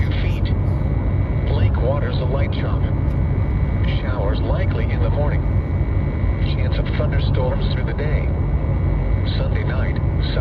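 NOAA Weather Radio's computer-synthesized voice reading the marine forecast in short phrases, over a steady low rumbling noise.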